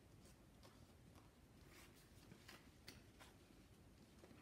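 Near silence, with a few faint clicks and light rustles of paper being handled and metal clip pegs being fitted on the edge of the stack.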